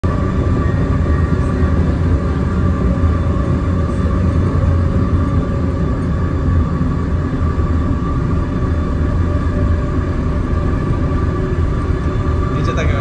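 Steady loud low rumble throughout, with a faint steady hum above it and no clear single events.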